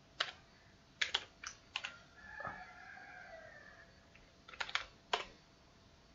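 Computer keyboard keystrokes: a few sharp key clicks about a second in, then another short burst near the end as a word is typed. Between them a faint, drawn-out call with wavering pitch sounds in the background.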